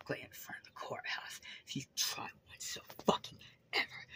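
Only speech: a woman talking in a low, whispery voice, the words indistinct.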